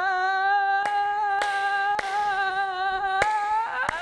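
A voice holding one long sung note with a slight waver, sliding upward just before it breaks off at the end. About five sharp hand claps land on it at uneven moments.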